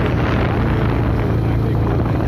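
Motorcycle engine running steadily while riding at road speed, with wind rushing over the microphone.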